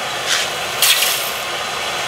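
Red-hot sheet-steel AK receiver quenched in water, hissing in two short bursts as the hot metal goes in. A steady hiss from the lit MAP gas torch runs underneath.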